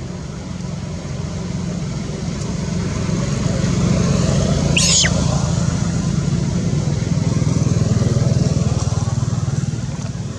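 A motor engine running with a steady low drone that grows louder through the middle and latter part. A single short high squeal cuts in about halfway through.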